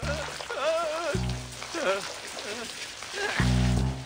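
A person's wordless vocal sounds over background music, with two short deep notes about a second in and near the end, and a steady hiss underneath.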